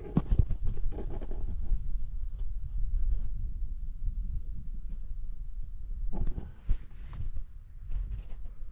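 Steady low rumbling noise on a handheld camera's microphone, with a few knocks just after the start and a cluster of clicks about six seconds in. Near the end a hand handles the camera.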